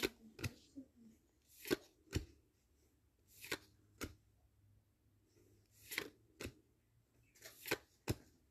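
Yu-Gi-Oh trading cards being flicked through one by one, each card slid off the front of a hand-held stack with a short, faint swish. There are about nine swishes, often in close pairs, with short pauses between.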